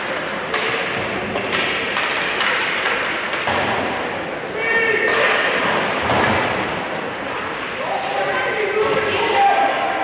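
Ice hockey play in an echoing arena: sharp knocks of puck and sticks hitting the boards and glass, several in the first few seconds, over a constant rink hubbub of voices.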